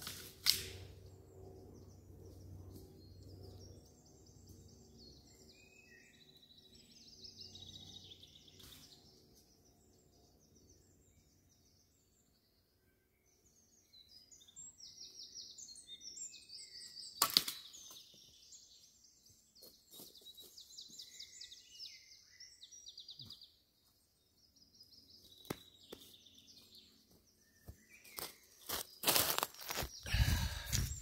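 Small birds singing: repeated quick trills and chirps. Two sharp clicks stand out, one about half a second in and a louder one about two-thirds of the way through.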